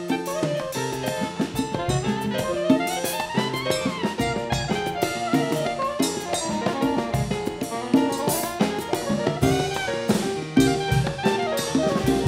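Soprano saxophone soloing in quick runs that climb and fall, over a jazz band with drum kit and hand percussion.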